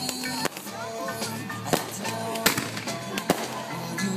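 Music playing with a steady beat, cut by a few sharp bangs of aerial fireworks shells going off.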